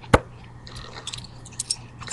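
Close handling noise of a playing card and coins: one sharp click just after the start, then a few faint ticks and light rustles.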